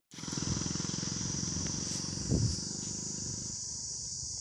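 Steady high insect chirring over a rapid low pulsing, with a brief louder swell about two and a half seconds in; the low pulsing fades near the end.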